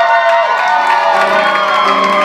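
Grand piano playing the opening chords of a song's introduction, sustained notes with lower chord notes added about half a second and a second in, over the tail of audience applause and cheering.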